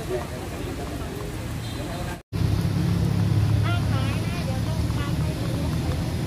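Steady low rumble under indistinct voices, cutting out completely for a moment about two seconds in.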